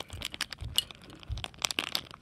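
Plastic blind bag of a LEGO minifigure crinkling and crackling as it is squeezed and worked between the fingers, a quick run of small crackles, with a couple of dull bumps near the middle.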